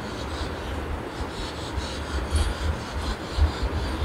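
A hand rubbing and scratching a long-haired dog's fur right beside the phone's microphone: a rough, steady rustle with irregular low bumps of handling noise.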